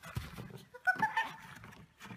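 A short high-pitched cry about a second in, over scuffling and thuds in snow as a dog bowls a person off a sled.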